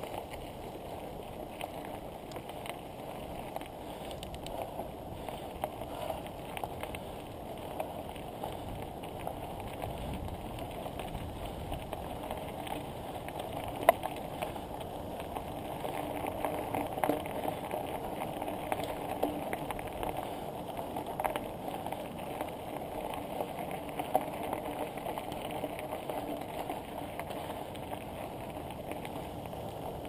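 Bicycle tyres rolling on a loose gravel track: a steady crunching hiss with scattered small clicks from stones, growing a little louder past the middle.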